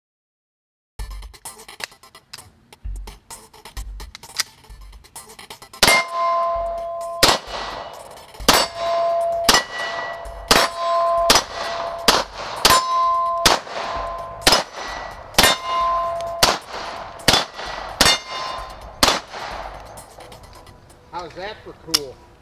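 A 9mm Beretta 92 pistol fired in a long string of shots at steel targets, about one to two shots a second, each hit leaving the steel plates ringing with a clear ding. The shots in the first few seconds are quieter; from about six seconds in they are louder and the ringing stands out.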